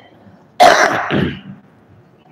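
A man clears his throat with a harsh cough about half a second in, in two quick pulses lasting under a second.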